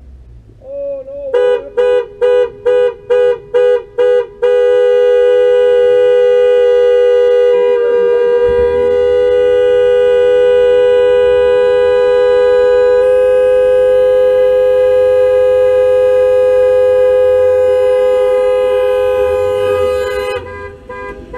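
A horn sounding in two close pitches: a run of about seven short blasts, three or four a second, then one long unbroken blast that holds steady for about fifteen seconds.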